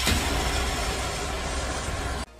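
Edited intro sound effect: a loud, noisy rumble with deep bass, opening with a sudden hit.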